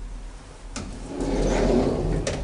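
Luth & Rosén elevator machinery running under a steady low hum: a sharp click about three quarters of a second in, then a mechanical rumble that grows louder.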